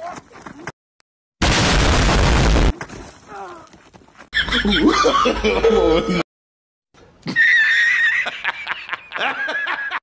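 A loud burst of noise lasting just over a second, about a second and a half in, followed by people laughing and talking.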